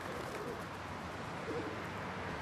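Rock pigeons cooing, two short coos, over a steady background hum of city air.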